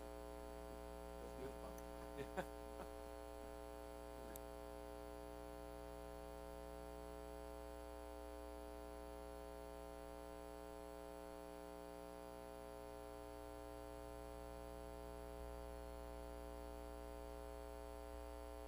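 Steady electrical mains hum with a buzzy stack of overtones, with a few faint clicks in the first few seconds.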